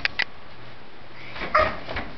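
Two sharp clicks near the start, then a short whimpering vocal sound from a toddler about a second and a half in.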